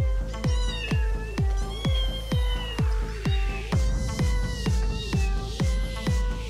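A kitten meowing three times, the calls wavering in pitch, over electronic dance music with a heavy kick drum about twice a second.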